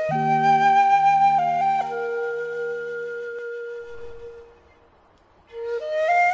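Background music: a Japanese transverse flute (yokobue) plays a slow melody over low sustained accompaniment. A long held note fades about four seconds in, a brief lull follows, and the flute comes back in near the end.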